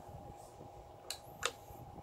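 Two short, sharp clicks about a third of a second apart, over a faint steady hum.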